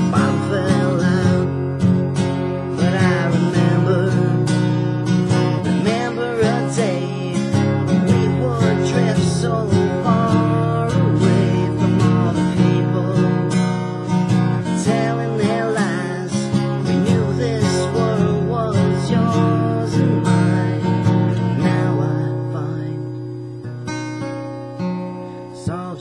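Acoustic guitar strummed in a solo instrumental passage of a song, getting quieter over the last few seconds.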